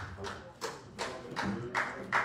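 A handful of sharp taps or knocks, roughly two a second, over faint voices in the room.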